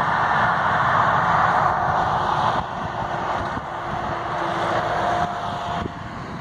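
Road traffic going past: a vehicle's rushing tyre noise, loudest in the first two seconds and then easing off, with a faint steady engine hum later on.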